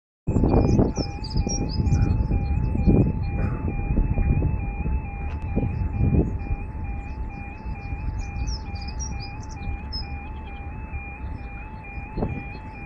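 Warning alarm of a British level crossing sounding steadily, a two-pitch repeating warble about twice a second, over a low rumble that eases after the first few seconds. It is the sign that the crossing is closing to the road for an approaching train.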